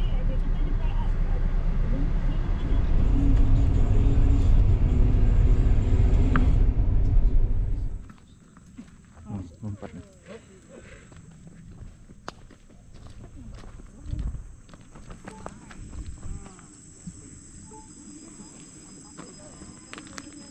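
Low rumble of a car heard from inside the cabin, loud for about eight seconds, then cutting off abruptly. Quieter outdoor sound follows, with a steady high-pitched drone and scattered faint clicks.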